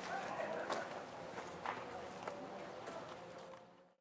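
Quiet outdoor background with a few faint clicks and rustles, fading out to silence near the end.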